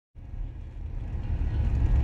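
Low rumble of a van running, heard from inside its cabin, growing louder over the two seconds.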